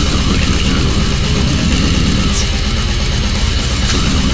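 Loud, dense death metal: heavily distorted guitars over a fast, steady drum pulse.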